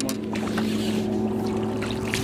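A boat's motor humming steadily at a low, even pitch.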